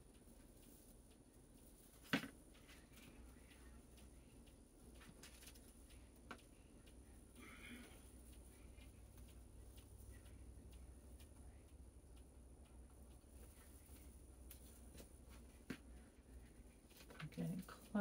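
Near silence: faint room tone with a low steady hum and a few soft, isolated clicks from hands twisting pipe cleaners and folding deco mesh on a wire wreath form, the loudest click about two seconds in.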